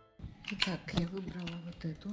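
A woman speaking quietly, with a few sharp clicks in the first second.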